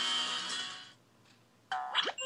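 TV programme title music fading out about halfway through, a short pause, then a bright electronic chime jingle starting sharply near the end as the age-rating card comes up.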